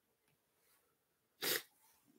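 A man's short, sharp sniff about a second and a half in, after near silence.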